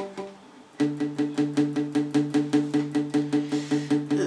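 Acoustic guitar strummed in a quick, even rhythm on one sustained chord, about seven strokes a second, starting about a second in: the intro before the vocal comes in.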